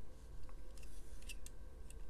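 Plastic LEGO bricks being handled and pressed onto a model, giving a few light, sharp clicks.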